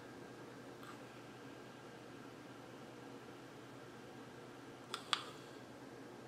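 Faint, steady draw through a Vapage Crystal XL BDC bottom-dual-coil clearomizer tank fired at 10 watts, a tank described as kind of noisy. Two short clicks come about five seconds in.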